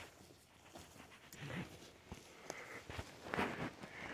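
Footsteps crunching and swishing through dry grass, with a few louder steps later on.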